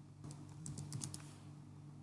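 Faint computer keyboard typing: a quick run of about eight keystrokes, starting about a quarter second in and ending a little past one second, over a steady low hum.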